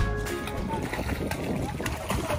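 Background music cuts off in the first half second. Then comes open-air sea sound: water splashing and wind on the microphone, with faint voices in the background.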